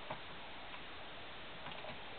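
Faint scratching and tapping of a dry-erase marker writing numbers on a whiteboard, over a steady low hiss.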